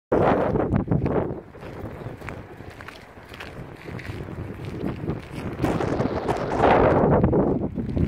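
Wind buffeting the microphone in uneven gusts, a low rumble that is strong in the first second, drops back, then swells again for the last few seconds.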